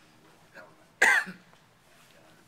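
A single loud cough about a second in, short and sharp.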